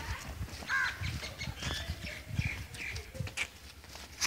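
Birds chirping and calling in short, scattered notes, over low irregular thuds.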